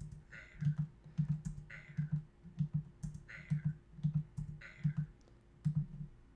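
Computer keyboard keys tapped in a steady run, about two or three taps a second, as the playhead is stepped frame by frame through the animation timeline. A brighter, higher sound comes about every second and a half.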